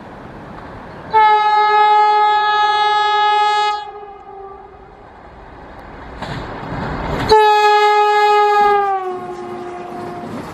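Vande Bharat Express electric train sounding its horn in two long blasts, the second falling in pitch near its end as the train goes by. Between and after the blasts, the rush of the train passing at speed grows louder.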